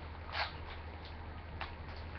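Trading cards being handled: a brief rustle about half a second in and a faint tick later, over a steady low hum.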